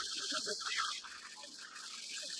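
Wildebeest herd plunging into and splashing across a river: a steady rush of splashing water, with a few short nasal grunting calls from the animals.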